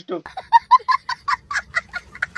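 Chicken clucking, a quick run of short calls about five a second.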